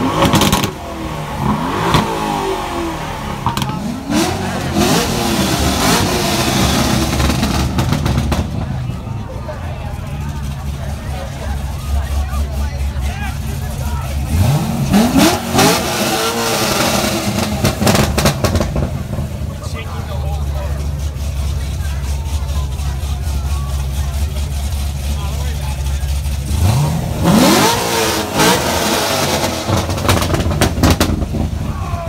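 Sports car engine idling, blipped up in about four quick revs that rise and fall back, with crowd chatter around it.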